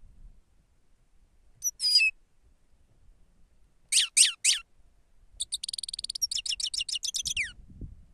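Grey-headed goldfinch singing: a short high call, then three quick downward-sliding notes, then a fast twittering run of about two seconds that ends on a falling note.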